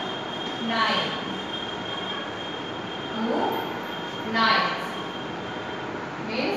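Chalk writing on a blackboard, with three short rising squeaks of the chalk about a second, three seconds and four and a half seconds in.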